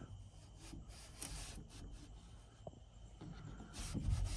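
Quarter-inch Lexan window panel, its edges wrapped in soft Velcro, sliding in an aluminium H-mold channel: a faint, soft rubbing with a small click a little after the middle. The Velcro wrap keeps it quiet.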